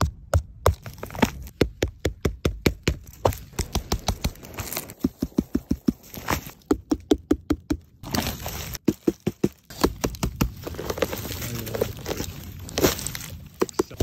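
Fingertip tapping on the caps of fresh wild mushrooms: quick runs of short, dull taps, up to about five a second. Some runs give a hollow, pitched knock. There is a short break about eight seconds in.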